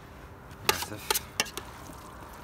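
A metal spoon knocking and scraping against a steel pot as food is scooped out of it: a few sharp clinks, close together, about a second in.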